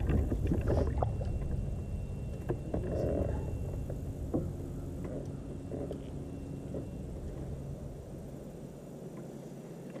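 Low rumble with scattered light knocks and handling sounds in an aluminum jon boat while a small largemouth bass is reeled in and lifted from the water. The rumble is strongest in the first couple of seconds, then eases.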